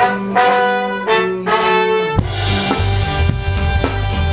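A live ska band's horn section opens the song with a short phrase of held chords; about two seconds in, the drum kit and bass come in and the full band plays on.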